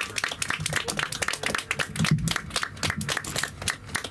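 A small group of people clapping by hand, applause at the end of a band's song.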